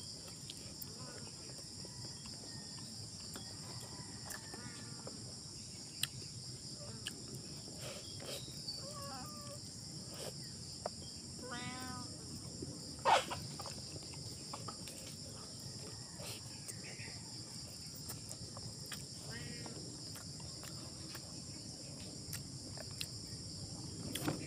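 Steady high-pitched drone of an insect chorus, with scattered small clicks and smacks of eating by hand and a few short chirping calls. The loudest sound is a sharp click about halfway through.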